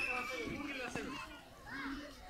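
A group of children's voices chattering and calling out, with two short sharp knocks about half a second apart in the middle.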